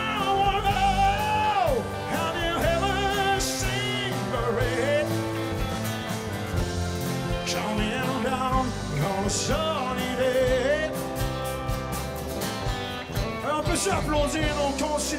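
Live country band playing a song: a long, wavering sung note near the start that drops away, then more sung phrases over acoustic guitar, keyboard and drums.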